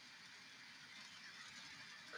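Near silence: faint room tone in a pause between sentences.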